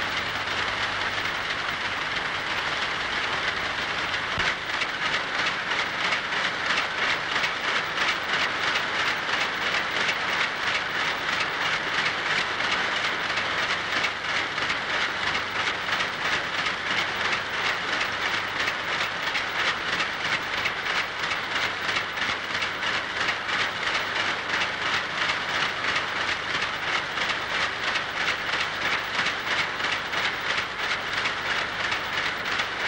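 Textile-mill looms running: a steady, rhythmic mechanical clatter of about three beats a second over a dense hiss, growing louder about four seconds in.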